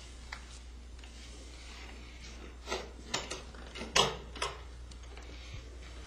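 A money box being opened and handled: a faint click near the start, then a handful of short knocks and clacks between about three and four and a half seconds in.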